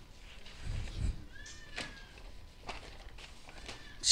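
A single faint animal call about a second and a half in, its pitch bending up slightly and then holding, with soft low bumps just before it.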